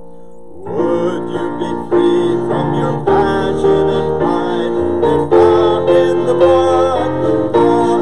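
Piano music starts about a second in, after a held chord fades away, and carries on steadily.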